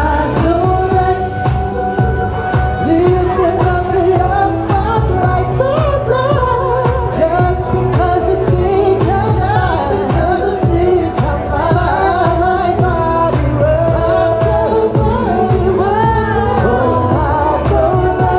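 A woman singing live into a handheld microphone, her melody gliding and held over pop accompaniment with a steady beat, heard through the club's sound system.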